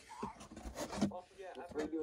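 Quiet speech, with a few faint clicks and knocks.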